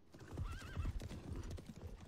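Horses' hooves clopping, with one short whinny of wavering pitch about half a second in.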